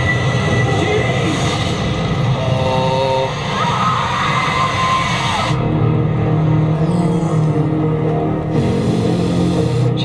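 Movie trailer soundtrack: music with sound effects, with no speech. About five and a half seconds in it drops to a lower, steadier passage.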